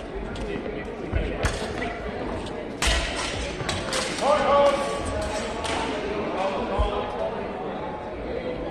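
Steel training longswords clashing in a sparring exchange, with a quick run of sharp metallic strikes about three seconds in and single hits before and after. A loud shout follows just after four seconds, and voices carry in a large echoing hall.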